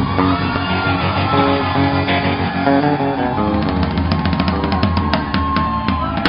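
Live rock band of electric guitars, bass guitar and drums playing the closing bars of a song, with no singing. In the second half a single guitar note is held over quick, even ticking strokes.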